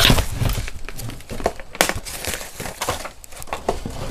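A CD case being opened and its CDs handled: plastic crinkling and rustling with scattered clicks, loudest at the start.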